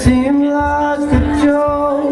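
A man singing a long held note over a strummed acoustic guitar.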